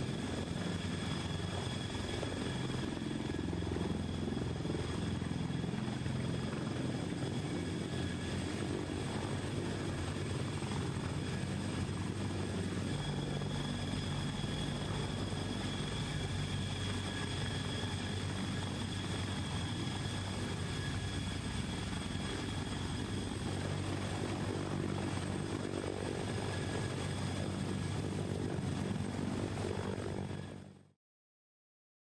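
Sikorsky CH-53K King Stallion heavy-lift helicopter in flight: steady rotor and engine noise with a constant high-pitched whine from its three turboshaft engines.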